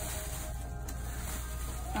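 Quiet background music, with faint rustling of a thin plastic shower cap being handled and pulled open.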